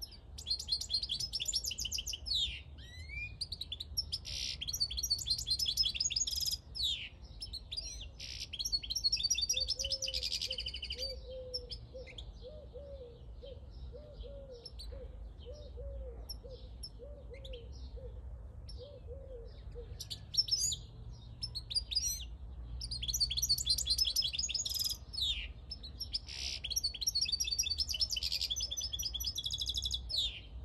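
Caged wild-caught European goldfinch singing: fast, tinkling, twittering song in two long spells, one in the first third and one in the last third, with a pause between. Through the pause a faint low note repeats about once a second.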